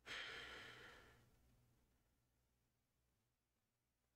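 A person breathing out once, an audible breathy exhale about a second long that fades away, followed by near silence.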